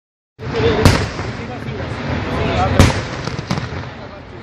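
Aerial fireworks shells bursting with sharp bangs over a steady noisy background: one about a second in, the loudest just before three seconds, and a third half a second after that.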